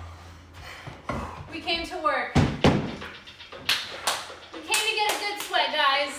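A woman's brief vocal sounds with several sharp hand claps in the second half and a couple of heavy thuds about two and a half seconds in.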